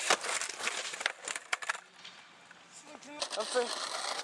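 Skateboard clacking sharply several times in the first two seconds as the board hits the ground, with the rough hiss of wheels rolling on pavement. People's voices come in near the end.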